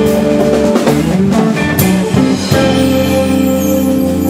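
Live jazz fusion band playing: drum kit, hand percussion, electric guitar, bass guitar and keyboards. Busy drumming runs over the band for about two and a half seconds, then a hit lands on a held chord with a cymbal ringing away.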